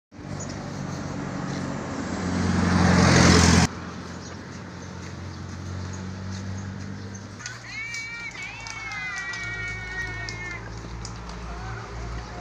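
A motor vehicle passing close on the road, growing louder until the sound cuts off abruptly a few seconds in. Later comes a long, wavering, high-pitched animal call lasting about three seconds.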